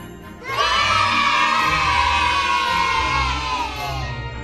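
A group of children cheering in one long shout that starts suddenly about half a second in and is held for about three seconds, falling slightly in pitch at the end, over background music.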